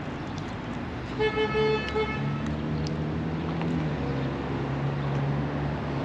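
A car horn toots for about a second, a little over a second in, followed by the steady low hum of a vehicle engine running.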